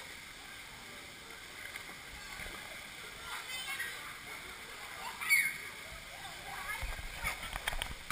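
Pool water splashing and lapping right at the camera, with faint voices of other swimmers in the hall; a short voice calls out about five seconds in, and the splashing comes closer and busier near the end as the child swims up.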